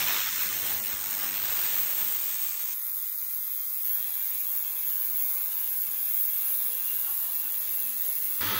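Benchtop ultrasonic cleaner running: a steady, high-pitched hiss and buzz from its water bath as a sample tube is held in it to be sonicated. The sound thins a little about three seconds in.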